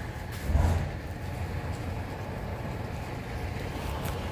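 A low, steady rumble of outdoor background noise, with a brief louder swell about half a second in.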